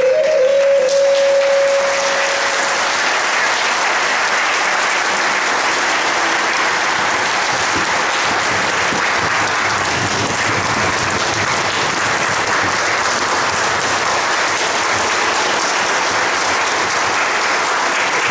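Audience applauding steadily, after a tabla solo. A held harmonium note carries on into the first couple of seconds and dies away.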